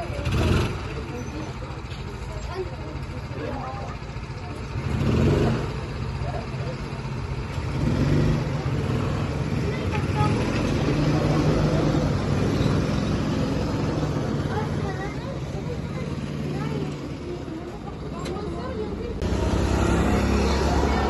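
Go-kart engines running on the track, swelling and fading several times as karts pass, with voices in the background.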